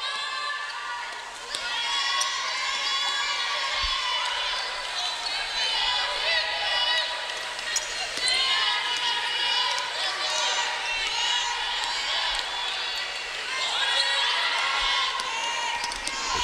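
A basketball being dribbled on a hardwood gym court, with short low thuds. Voices of players and spectators call out in the hall throughout.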